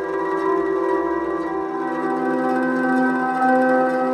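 Ambient meditation music of long, held ringing tones layered together, with a new lower tone coming in about halfway through and holding on.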